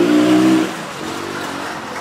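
A motor vehicle engine running close by: a steady engine hum, loudest for about the first half-second, then dropping to a quieter, even background noise.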